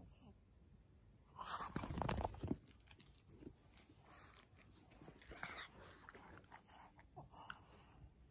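A pug's wet mouth noises, chewing and smacking with small clicks, and a louder burst of noise about one and a half to two and a half seconds in.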